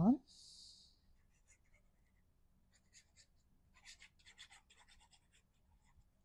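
Faint scratching of a fine-tip liquid glue bottle's nib drawn across cardstock, laying down squiggly lines of glue in a run of short strokes about halfway through.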